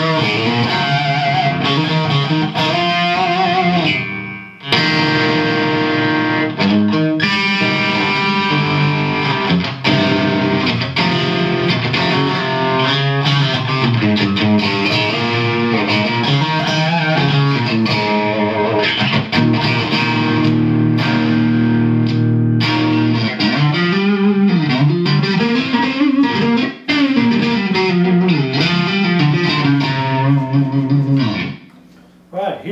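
Distorted electric guitar played through a Rocktron Piranha all-tube preamp on a high-gain rock setting, with the guitar tuned down to C. It plays riffs and held chords, with short stops about four seconds in and twice in the second half.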